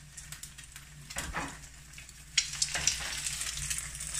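Eggs frying in hot oil in a nonstick pan, a fine crackling sizzle that turns suddenly louder and busier a little over halfway in.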